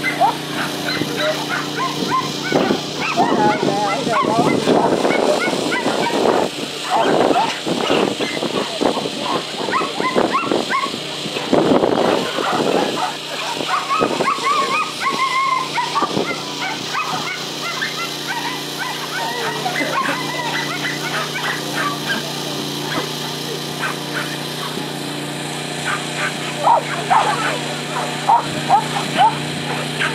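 Dogs barking and yipping in excited bursts, densest early and again in a quick run near the end, over a steady low hum.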